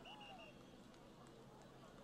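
Near silence: faint background hiss, with a faint, high, pulsing tone in the first half second.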